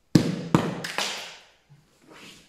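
Three sharp thumps about half a second apart, each fading away.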